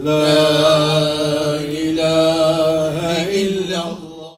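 A man's voice chanting in long, slowly wavering held notes, one phrase giving way to the next about two seconds in.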